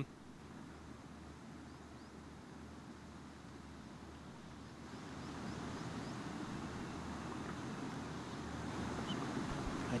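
Open-air background noise on a golf course: a steady, even hiss that grows a little louder about halfway through. A few faint, high, short chirps sound over it.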